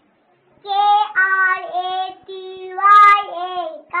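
A young child singing in a high voice, holding a string of steady notes one after another, starting about half a second in.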